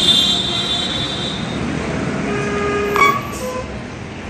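Outdoor background noise with a high-pitched squeal in the first second or so, then a short horn-like tone lasting about a second, cut by a sharp click near the three-second mark.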